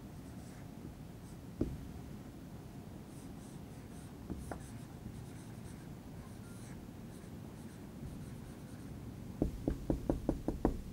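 Marker pen writing on a whiteboard: faint squeaky strokes, with an occasional knock of the pen against the board. Near the end comes a quick run of sharp taps as a row of dots is tapped onto the board.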